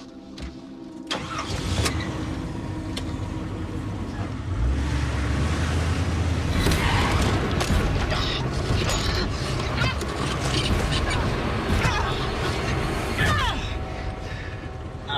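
A car engine starts about a second in and the car drives off, the engine's sound getting heavier about four and a half seconds in and running on, with a few short knocks and rattles over it.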